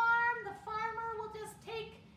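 A woman's high-pitched, sing-song puppet voice, performing a monologue as the mother pig. It comes in drawn-out phrases with a short break about a second and a half in.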